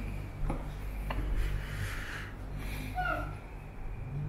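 Steady low room hum with two light clicks and a short rubbing rustle, like a phone being handled while it films.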